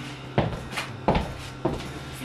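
Footsteps of stiletto-heeled thigh-high boots on a hardwood floor: several heel knocks, about two a second. The heels have rubber tips, so each step lands as a dull knock rather than a sharp click.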